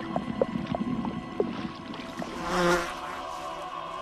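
A fly buzzing: a wavering whine that swells up about two seconds in and fades again. Before it come a few faint, irregular ticks over a low rumble.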